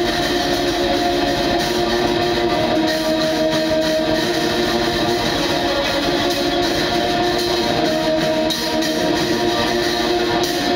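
Black metal played live by a guitar-and-drums duo: distorted electric guitar over drums, forming a loud, dense wall of sound with no break.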